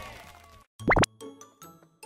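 Edited-in audio: the intro music dies away, then a quick rising whistle-like sound effect, the loudest sound, about a second in, followed by short, light notes of background music starting up.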